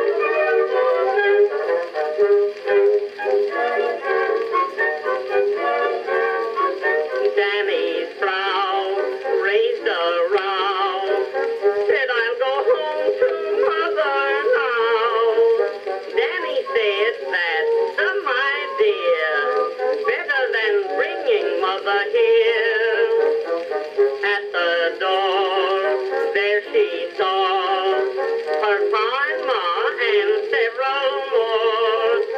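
Music from an Edison Blue Amberol cylinder playing on an Edison cylinder phonograph. It is an early acoustic recording of a popular song and sounds thin, with almost no bass or treble.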